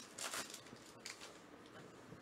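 Topps Allen & Ginter trading-card pack wrapper crinkling and tearing open in the first half second, then faint rustling and a small click as the cards are slid out of it.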